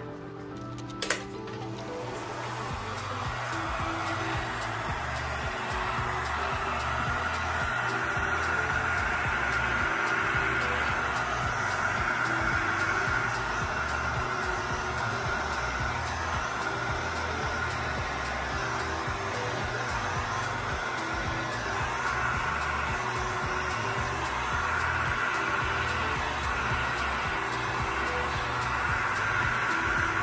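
Heat gun blowing a steady rush of hot air over wet resin, building up over the first few seconds, pushing the resin into a wave line, with background music throughout.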